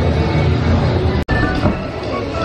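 Steady low rumble of a moving Spaceship Earth ride vehicle under the attraction's own scene soundtrack. The sound cuts out for an instant just past halfway.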